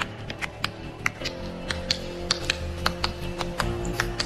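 Rapid, even clicking, about five clicks a second, over background music with long held notes that come in about a second in.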